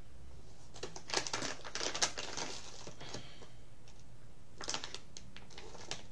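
Dry crackling and rustling of loose pipe tobacco being pinched and pressed into a pipe bowl. It comes in two bursts of quick clicks: one lasting about a second and a half starting just under a second in, and a shorter one about two-thirds of the way through.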